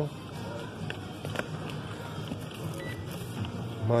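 Steady hum of shop background noise, with a few faint taps about a second in as shrink-wrapped vinyl LP sleeves are handled and flipped through in a wooden rack.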